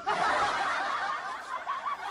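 Laughter that starts abruptly and runs on in a continuous stream of chuckles and snickers.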